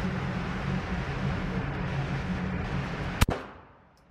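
A single gunshot about three seconds in, over a steady low hum at an indoor shooting range; right after the shot the recording's level drops away sharply.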